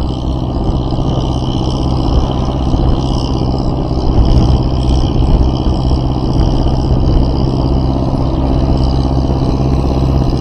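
Motor vehicle engine running steadily at cruising speed, a low, even drone with road noise, a little louder about four to five seconds in.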